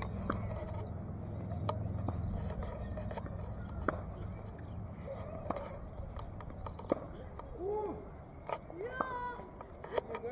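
A tennis ball being struck and bouncing on a hard court: a series of sharp pops, roughly one every one to one and a half seconds, over a low rumble in the first few seconds.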